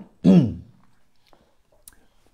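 A man coughs once to clear his throat, a short, loud, voiced cough that falls in pitch, followed by a faint click near the end.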